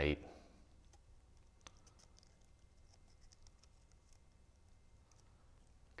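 Faint, sparse clicks and crinkles of a fringed cardstock strip being wound tightly around a pencil by hand.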